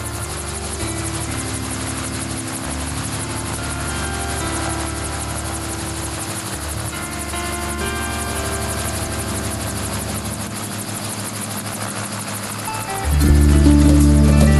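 RotorWay Exec 90 light helicopter hovering low, its rotor blades chopping steadily, with background music underneath. The music turns much louder about a second before the end.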